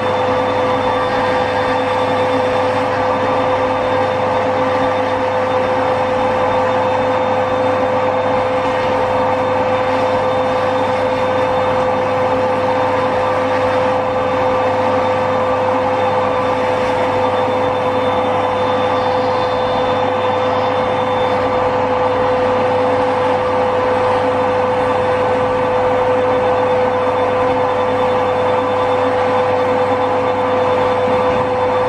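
Electric nail drill running steadily with a constant whine, its metal burr grinding down a thick, dead toenail.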